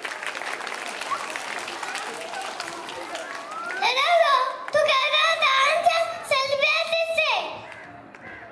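Audience applause for the first three seconds or so. From about four seconds in, a child's high-pitched voice comes over the stage microphone, held on long, drawn-out notes: the loudest part. It fades away shortly before the end.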